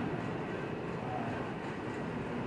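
Steady room noise, an even hum and hiss with no clear speech.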